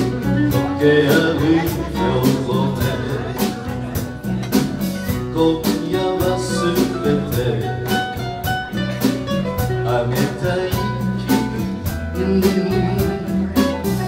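Live band playing an instrumental passage on piano, acoustic guitar, bass and drums, with a steady beat.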